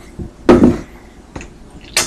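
Knocks and clicks from handling a plastic Mud Jug spittoon and its lid: one loud clunk about half a second in, a faint click, then a sharp click near the end.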